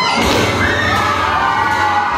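Audience cheering and shouting in many high voices, with a thud about a quarter of a second in.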